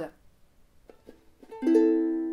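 Ukulele strumming an A minor chord once, about one and a half seconds in, the chord left to ring. A few faint plucked notes come just before it.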